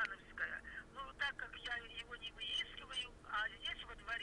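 A person talking over a telephone, the voice thin and narrow as through a phone line.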